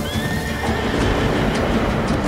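A horse whinnies once, for about a second, over the rumble of several horses' hooves galloping on dirt.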